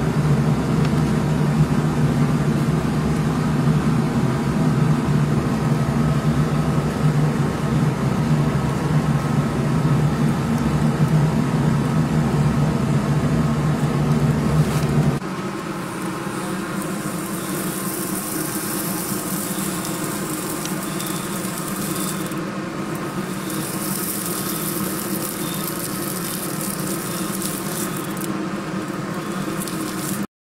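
A steady low mechanical hum fills the first half and changes abruptly about halfway through. A hot Kerckhaert Comfort Sport horseshoe is then pressed against the hoof for hot fitting, sizzling and hissing as it sears the hoof. The sizzle breaks off briefly twice, as the shoe is lifted and set back.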